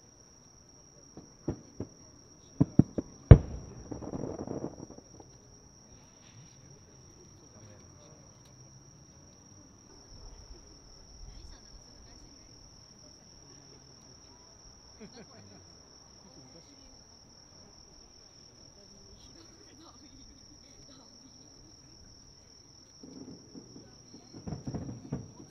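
Aerial firework shells bursting at a distance: a string of sharp cracks and bangs in the first few seconds, the loudest about three seconds in, trailing into a rolling rumble. After that a steady high insect chirring carries on, and a low rumble of new bursts starts near the end.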